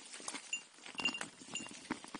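E-bike rattling over a rough dirt track: irregular clicks and knocks, with a few short high squeaks.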